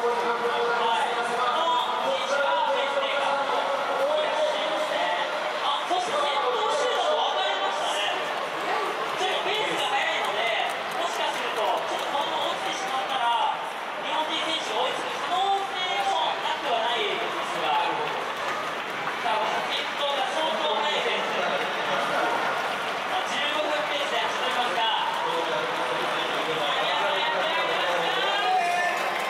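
Indistinct voices of people talking in a stadium, several overlapping at once with no clear words, at a steady level.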